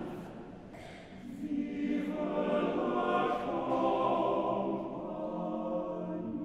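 Choir singing sustained chords; it drops softer about a second in, then swells louder through the middle.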